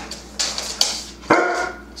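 Catahoula Leopard Dog barking on the 'speak' command: two short, sharp sounds, then one full bark a little past halfway.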